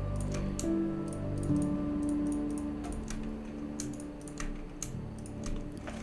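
Soft background music of long held notes, with scattered computer mouse and keyboard clicks over it.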